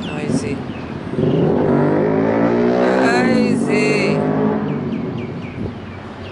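A motor vehicle's engine accelerating on the street below, its pitch climbing for about two seconds, then easing off and fading.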